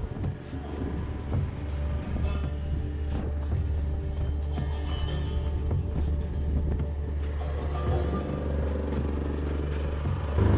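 Background music over a steady low hum.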